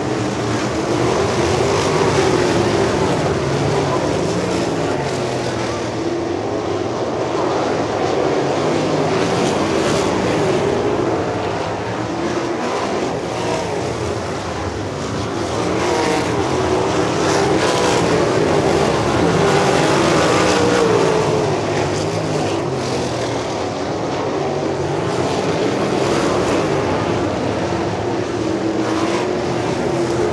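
Winged dirt-track sprint cars' V8 engines running at racing speed, their pitch rising and falling in waves as they rev down the straights and lift through the turns.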